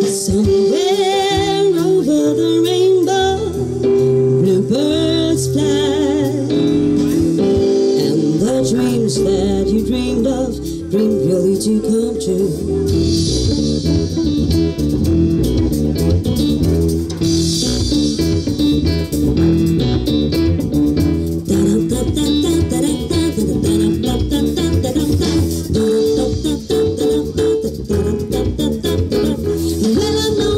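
Live band playing: a singer for roughly the first ten seconds, then an instrumental stretch with a bass line and a steady beat.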